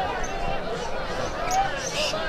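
A large outdoor crowd of men chattering, with many voices overlapping and none standing out, over a steady low rumble.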